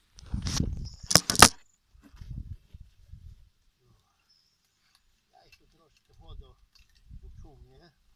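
A few dull knocks and then two or three sharp clicks in the first second and a half, followed by faint low thumps. Distant voices can be heard faintly in the second half.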